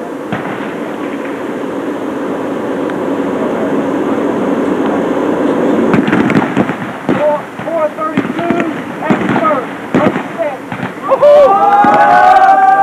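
Indistinct voices of soldiers over a rough, crackling background noise, with broken bits of talk from about halfway through. Near the end a loud, drawn-out shouted call rings out.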